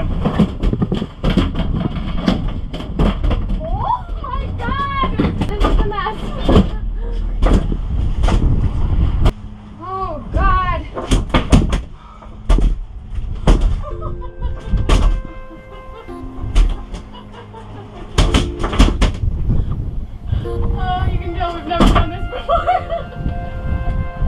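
Wind rumbling on the microphone aboard a moving sailboat, with repeated sharp thumps and knocks on the cockpit deck and a couple of short voiced cries. Music with held notes comes in about halfway through.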